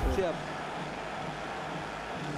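A commentator's last word, then steady, faint background noise of the arena broadcast feed with no distinct events while the teams line up for the jump ball.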